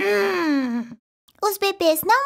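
A long sigh in a voice, falling steadily in pitch for about a second, followed near the end by a few short, quick spoken syllables.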